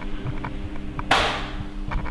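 Noise from a faulty camera microphone: a steady low electrical hum, with one sudden rushing burst of crackle about a second in that dies away within half a second.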